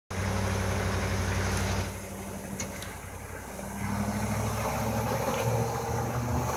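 Hummer H1's engine working at low speed under load as the truck crawls up a rock face. It eases off about two seconds in and picks up again about a second and a half later.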